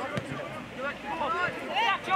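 Several voices calling and shouting at once across a soccer field as players and spectators follow the play. A sharp thump comes just after the start and another near the end.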